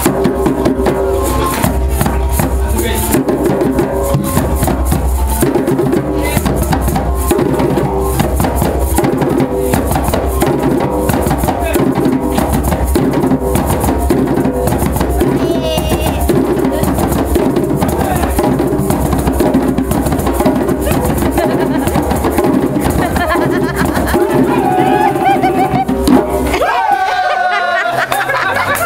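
Several djembe hand drums played together in a fast, steady rhythm, with one drum also struck with a stick. The drumming stops suddenly just before the end.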